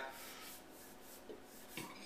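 Faint rubbing of palms together, skin brushing against skin.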